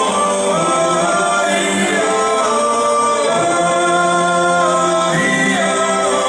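A choir singing in chords, several voices holding long notes and moving together from note to note. No live performer is on the stage.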